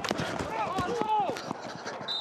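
Football players' wordless shouts and grunts on the field during a run play, mixed with sharp knocks of cleats and pads colliding, the sharpest knock right at the start.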